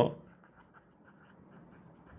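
Faint light tapping and scratching of a stylus writing handwritten script on a tablet screen.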